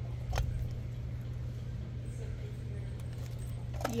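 Metal-framed purses being handled on a display: a single sharp click about half a second in and faint jingling of metal hardware over a steady low hum.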